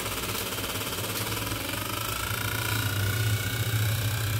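Small pink handheld electric mini fan running close to the microphone: a steady motor hum and blade whir. Around the middle a whine rises slightly in pitch and the sound grows a little louder as the fan is turned up toward its highest speed.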